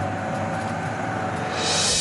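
Military vehicle engine running steadily, a low hum with faint steady tones over a noisy rumble. A brighter hiss comes in near the end.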